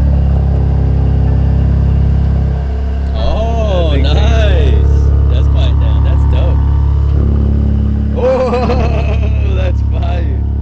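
BMW G80 M3's twin-turbo S58 straight-six idling loud and steady with its exhaust valves open, through a single mid-pipe that has just been fitted. The note shifts slightly about two and a half seconds in.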